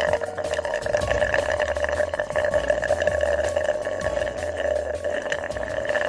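Juice being sucked hard through a drinking straw in one long, unbroken, steady draw with a crackly slurping texture.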